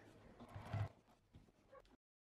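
Juki TL2000Qi straight-stitch sewing machine stitching through quilted binding at low speed, in one brief run of a few clicks a little over half a second in.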